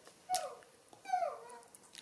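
A baby macaque giving short high calls that fall in pitch: one brief call near the start, then a cluster of two or three a second in.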